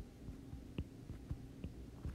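A few faint, light taps of a stylus on an iPad touchscreen as dots are dotted onto the screen, over a low steady hum of room tone.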